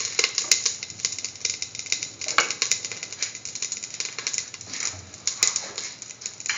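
Cooking oil heating in a stainless steel pan, crackling with many small irregular pops as bubbles form, a few sharper clicks standing out.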